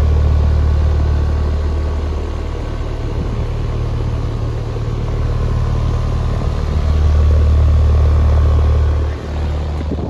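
Outdoor condensing unit of a 1.5-ton R-410A split air-conditioning system running up close: a loud, steady low rumble of the compressor and condenser fan moving air, with a faint steady whine above it.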